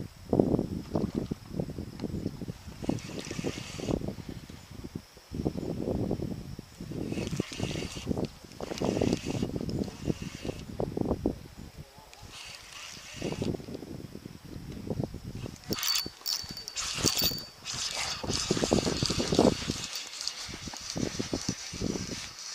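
Rustling and knocking of a spinning rod and reel being handled, with sleeve and clothing brushing close to the microphone and a few brief scratchy hisses.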